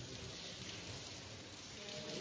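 Faint, steady hiss of water dripping and trickling in a mine tunnel.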